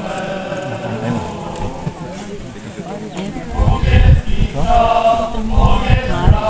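A group of voices singing together from the costumed feast procession, mixed with crowd voices. About halfway in it grows louder, with heavy low rumbling thuds under the singing.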